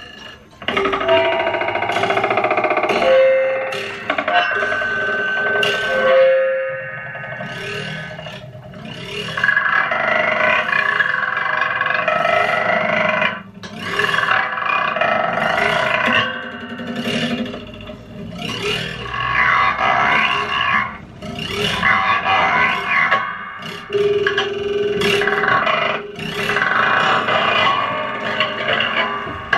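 Live experimental noise improvisation on amplified objects, which are scraped, struck and rubbed to make a dense, irregular clatter of scrapes and clicks. A few short held tones sound, one near the start and another about 24 s in, and there is a brief drop about halfway through.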